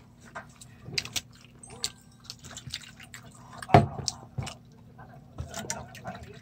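Wet chewing and mouth sounds of someone eating spicy sauced pig's trotters, with scattered light clicks and a short hum about four seconds in.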